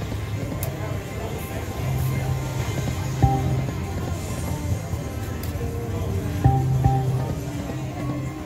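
Lock It Link Diamonds video slot machine playing its electronic game music through a spin, with short knocks about three seconds in and twice more near six and a half and seven seconds.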